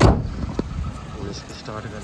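A car door shut with a single sharp thump, followed by a low voice.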